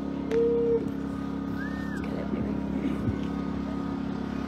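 A steady low mechanical hum, as of a motor running, with a short held tone about half a second in and a faint brief chirp about halfway through.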